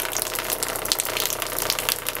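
A thin stream of water, shaken into droplets by a speaker vibrating its hose at 30 Hz, falling and splashing into a trough below: a steady, crackly splashing.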